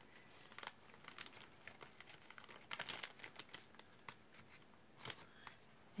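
Faint crinkling of a small plastic bag with scattered light clicks, in a few short spells, as earrings are loaded into it.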